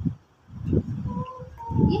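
Baby making a few short, high-pitched voice sounds between mouthfuls at a fruit feeder.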